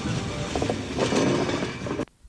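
Wooden handcart with spoked wheels rattling and rumbling as children pull it over the grass.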